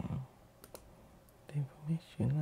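A few sharp computer mouse clicks: two close together about half a second in and another shortly after one and a half seconds. A man murmurs low under his breath between them.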